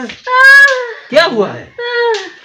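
A woman's high-pitched wailing cries of pain, three short drawn-out cries, the middle one falling in pitch, from a bee sting.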